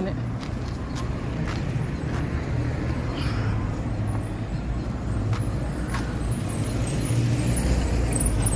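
Road traffic on a town street: cars driving past with a steady low rumble that grows a little louder near the end, with a few faint clicks.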